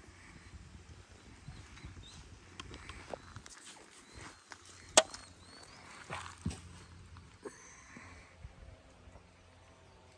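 Sharp handling clicks from a compound bow and release aid as the archer draws to full draw, the loudest click about five seconds in and a smaller one a second and a half later. Light wind rumbles on the microphone, with faint bird chirps.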